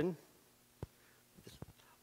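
A pause in a man's speech: his words trail off just after the start, a brief soft 'I' comes about a second in, and a few faint clicks follow.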